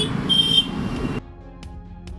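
A brief shrill, whistle-like high tone over street noise, in two short bursts. About a second in, the street sound cuts off abruptly and gives way to quiet background music.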